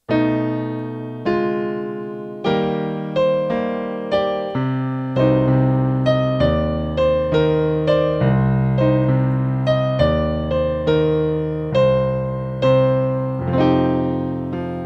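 Solo piano playing the introduction to a blues song: chords struck one after another, each ringing and fading before the next. It starts suddenly, and the chords come closer together, about two a second, after the first few seconds.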